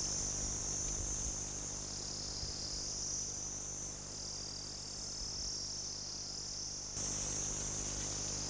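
Steady, high-pitched chorus of insects chirring, the ambient sound of the landscape footage; it gets a little louder about seven seconds in.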